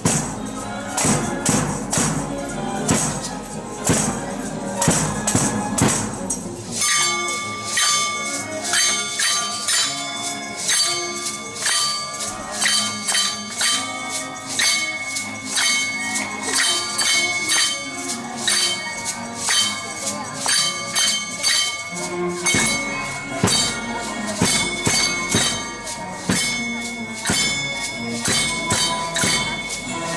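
A hand-percussion band playing in rhythm: shaken maracas and jingles with struck wooden clappers and bells, over a melody. The music changes about seven seconds in, when a steady, higher melody comes in and the low part drops out.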